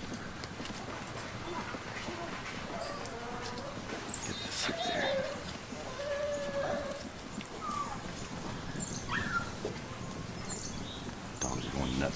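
Dogs barking and yelping after squirrels in the trees: a scattered string of short calls, with a few longer, drawn-out ones through the middle.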